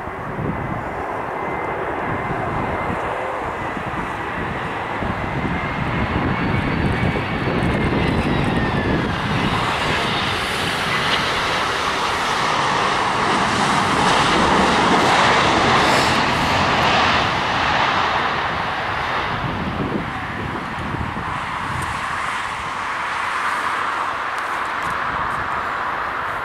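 Airbus A320-200 airliner's CFM56 turbofan engines on final approach and landing. A steady jet engine roar carries a thin high whine that drops in pitch about seven to nine seconds in. The sound grows loudest as the aircraft passes about fifteen seconds in, then eases as it rolls out down the runway.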